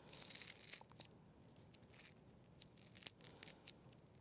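Small styrofoam ball being pinched and rolled between fingertips. The foam rubs with a faint scratchy rustle through the first second, then gives a few scattered faint clicks.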